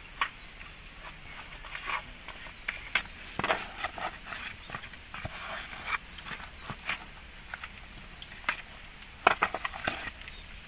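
Steady high insect drone, with irregular wet squelches and small clicks from hands rubbing spice paste into whole fish in a plastic basin. A quick cluster of sharper clicks comes near the end.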